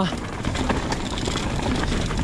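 Riding noise from an e-mountain bike on a trail: wind rushing over the camera microphone together with tyre rumble and a steady scatter of small knocks and rattles from the bike.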